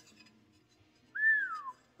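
A man whistles once, a short note of under a second that rises briefly and then slides down in pitch, in the manner of an impressed whistle.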